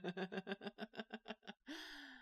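A person laughing quietly in quick, even pulses that fade out over about a second and a half, followed by a short breathy sound near the end.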